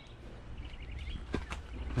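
Quiet outdoor background with a steady low rumble, a faint high chirping trill from a small bird, and two light clicks about a second and a half in.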